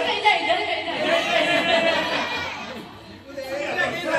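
People talking and chattering, with a voice amplified through a microphone in a hall.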